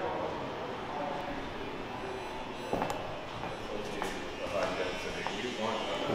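Faint, indistinct voices in the background over a steady hum of room noise, with a few light clicks around the middle.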